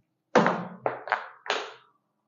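Four sharp thuds in quick succession, the first the loudest, each dying away briefly.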